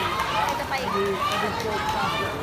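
Poolside spectators shouting encouragement to swimmers in a race, several raised voices calling out over one another with no clear words.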